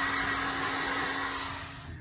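Electric hair dryer blowing steadily with a constant hum as it dries a wet poodle's coat, fading away near the end.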